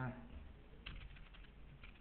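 Computer keyboard typing: a quick run of faint keystrokes starting about a second in and lasting nearly a second.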